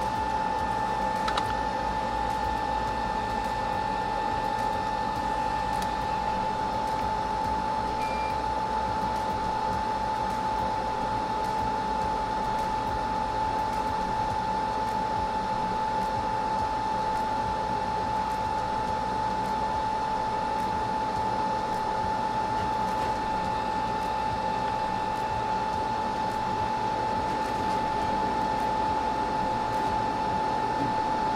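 A fume extractor's fan running steadily: an even rush of air with a constant high-pitched whine.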